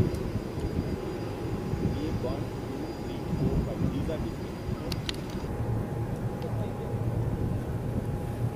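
Indistinct voices of people talking outdoors over a steady low rumble, with a couple of sharp clicks about five seconds in.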